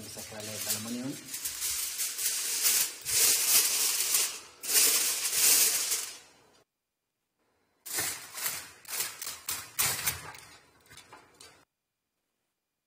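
Crinkling aluminium foil being spread over a pot and pressed down around its rim. It comes in two spells with a pause of about a second between them, sealing the pot of rice so it can steam on low heat.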